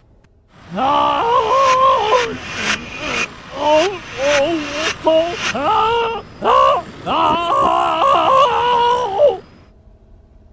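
Animated cartoon character voices speaking in short phrases, pitched unnaturally high and warped by editing effects, so the words are unintelligible. The voices stop shortly before the end.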